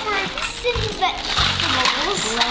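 Clear plastic bags of toy food crinkling and rustling as they are handled, over background music with a regular low beat and children's voices.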